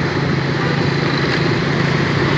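A motorbike engine running steadily while riding in street traffic, a constant low hum with road and wind noise.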